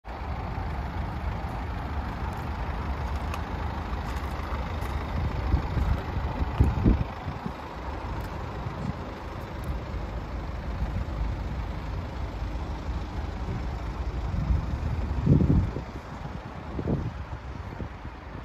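Wind rumbling on the microphone, with two stronger gusts about seven and fifteen seconds in.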